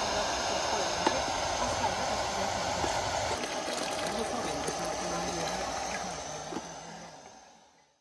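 Water poured in a steady stream into a large steel pot of tomato broth, splashing, with a few light clinks in the first two seconds; the sound fades out near the end.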